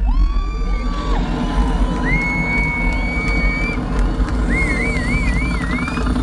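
Live concert sound at high level: a deep, steady droning low end under sliding, wavering high tones, with the crowd cheering.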